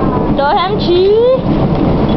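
Voices of a group of young people calling out, with a rising voice about a second in, over a loud, steady rumbling noise.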